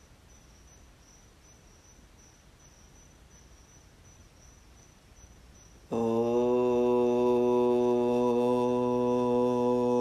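Faint crickets chirping in a steady, even pulse, then about six seconds in a man's voice suddenly starts chanting one long, steady, much louder note, a drawn-out mantra syllable such as 'Om', held without a break.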